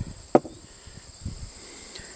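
Steady chirring of field insects, with a single sharp knock about a third of a second in and a couple of faint knocks later.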